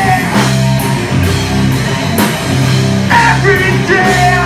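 Live rock band playing loud: electric guitars, bass and drums with cymbal crashes. A singer's voice comes back in about three seconds in.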